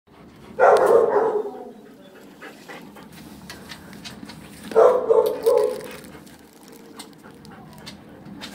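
A dog barking: a bark near the start, then a quick run of three barks about five seconds in.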